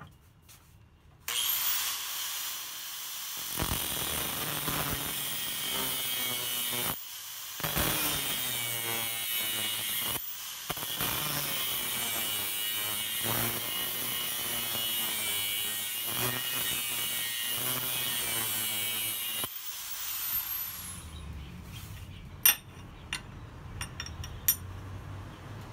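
Angle grinder spinning up about a second in and grinding the tool-steel jaw of hand-forged shears held in a vise, with two short breaks, then winding down near the end. A few sharp metal clicks follow, the loudest of them a little after the grinder stops.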